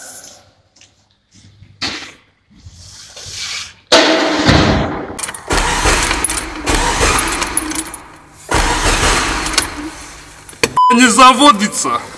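Car engine cranked on the starter in two long attempts without catching, which the driver blames on bad petrol. A censor beep and speech come in near the end.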